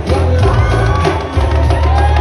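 Snare drum struck with sticks in quick, repeated hits over a loud backing track with a heavy bass line.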